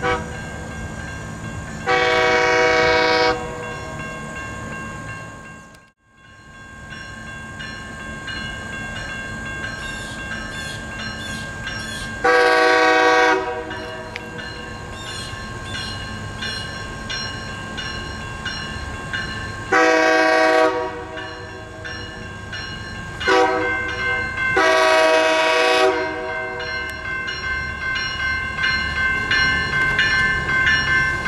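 Commuter train horn blowing the grade-crossing signal. There is one long blast, and then a long, a long, a short and a long blast, over the steady ringing of level-crossing bells. The train's running noise grows louder near the end as it draws nearer.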